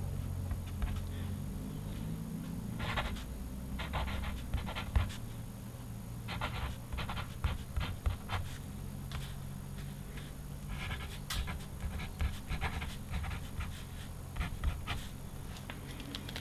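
Derwent Graphik white paint pen tip scratching across black paper as letters are written, in short clusters of strokes that start and stop, over a steady low hum.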